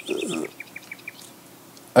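Small songbirds chirping in the background, a quick run of short high chirps at about five or six a second that thins out after the first second. A brief swish, louder than the chirps, comes right at the start.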